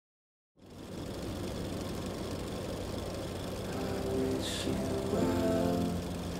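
Film projector sound effect: a steady rattling whir starts about half a second in. A song's intro of held notes fades in over it from about four seconds.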